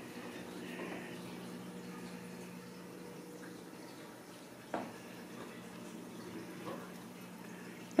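Quiet indoor room tone with a steady low hum, broken by one short knock a little past halfway and a fainter one later.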